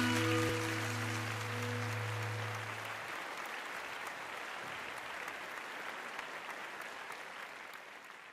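The closing chord of the intro music holds and stops about three seconds in, over audience applause that slowly dies away.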